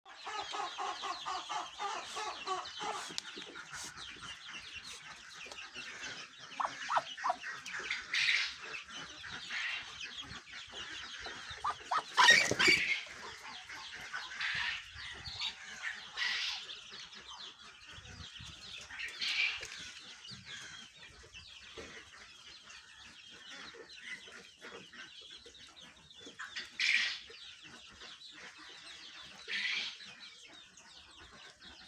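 Domestic poultry calling, with short clucks and peeps scattered through, and one loud call about twelve seconds in. A person laughs briefly at the start.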